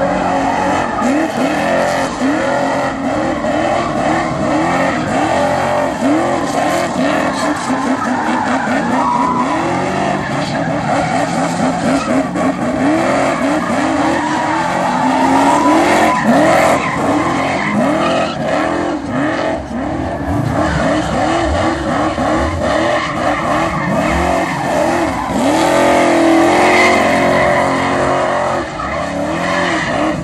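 An American rear-wheel-drive sedan doing donuts: the engine is held at high revs that rise and fall over and over while the rear tyres screech and spin on the asphalt without a break.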